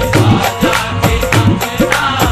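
Instrumental passage of a qawwali: hand drums play a fast, even rhythm with bass strokes that bend in pitch, about three a second, over sustained harmonium tones.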